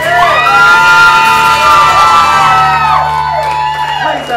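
Live vocal music: a man's singing voice holds a long, wavering high note over guitar for about three seconds, with shouts and whoops from the crowd, then the note falls away near the end.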